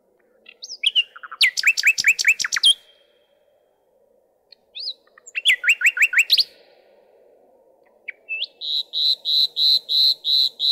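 Common nightingale singing three strophes. The first two are quick runs of rapidly repeated whistled notes, each note sliding down in pitch. Near the end a third strophe begins: a slower, even series of repeated piping notes at one pitch, about two or three a second.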